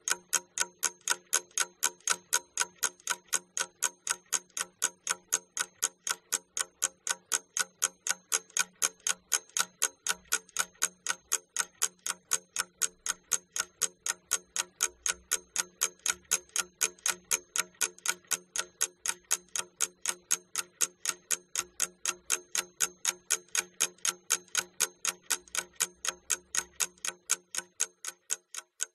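Clock-ticking sound effect used as a countdown timer: quick, perfectly even ticks that all sound alike and never change pace. It marks the thinking time given for a task.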